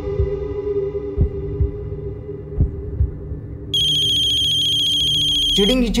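Dramatic background score with low thumps in pairs like a heartbeat. About two-thirds of the way in, a mobile phone ringtone cuts in: a steady, high, fluttering electronic ring lasting about two seconds, followed by a man's voice.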